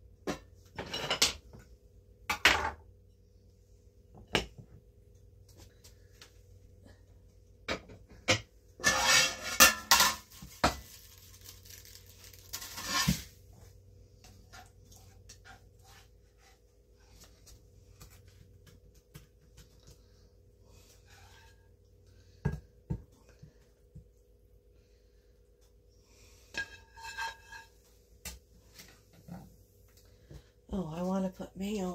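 Clatter of a stainless frying pan and kitchen utensils while eggs are served onto toast: scattered knocks and clinks, a dense burst of scraping and rattling about nine seconds in, and a few ringing metal clinks near the end. A faint steady hum runs underneath.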